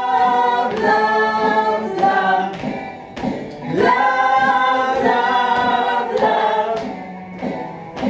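A group of voices singing together in harmony, a choir-like song sung in held phrases, with brief breaks between lines about three seconds in and near the end.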